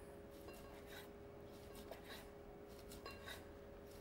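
Near silence: a faint steady hum with a few faint ticks of a chef's knife slicing a cooked steak on a wooden board.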